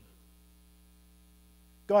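Faint, steady electrical mains hum with nothing else above it. A man's voice starts again at the very end.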